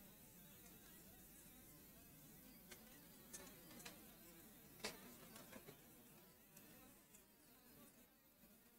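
Near silence: faint room tone with a few soft clicks, the clearest nearly five seconds in.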